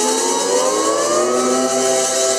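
Electric lap steel guitar holding a chord while the steel bar slides it slowly upward in pitch, a long rising glide of about a second and a half that then levels off.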